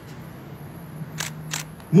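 Two short, sharp camera-shutter clicks about a third of a second apart, over a low steady hum.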